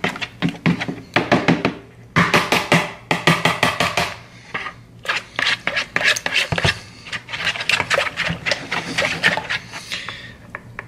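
A metal spoon beating pudding mix and milk in a plastic bowl: rapid clicking and scraping strokes against the bowl in bursts, with short pauses about two and five seconds in, as lumps of undissolved mix are broken up.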